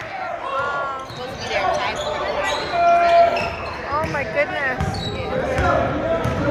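Basketball dribbled on a hardwood gym floor, over many overlapping crowd voices and shouts.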